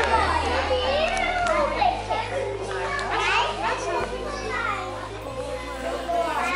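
Young children's voices chattering and calling out in a large room, with background music underneath.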